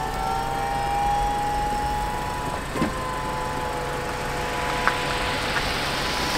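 Mercedes-Benz convertible's power soft-top mechanism folding the fabric roof away: a steady motor whine with a single clunk about three seconds in, the whine dropping away near the end as the roof settles into the stowed position.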